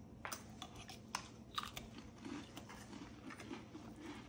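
A person chewing a mouthful of chicken salad with chopped celery: faint crunching and a few small scattered clicks.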